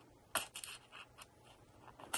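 Faint handling of paper: a small paper label being tucked behind the edge of a card tag, with a sharp tick about a third of a second in and a few fainter ticks and rustles after it.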